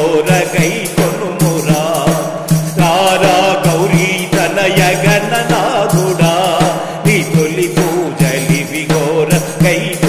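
A man singing a Telugu devotional bhajan to Ganesha in a wavering, ornamented melody over a steady drone, with percussion keeping an even beat.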